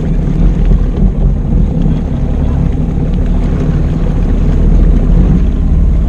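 Jet ski engine running under way, a loud, steady low drone, with wind on the microphone.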